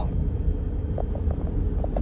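Steady low rumble of road and engine noise heard inside a moving car's cabin, with a few faint ticks about a second in.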